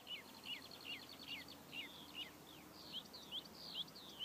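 Faint birdsong: a bird repeating short chirps that fall in pitch, about two a second, over a quiet steady background hiss.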